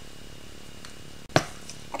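Low, steady room tone with one sharp knock, a single click-like impact a little over a second in.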